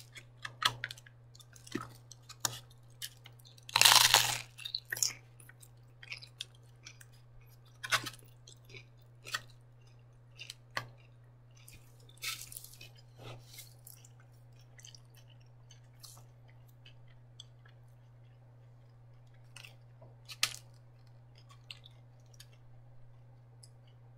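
Handling and eating from a styrofoam takeout clamshell: scattered clicks and knocks of the foam box and a utensil, with chewing. A louder, longer scrape comes about four seconds in and another around twelve seconds; the clicks thin out in the second half, over a steady low hum.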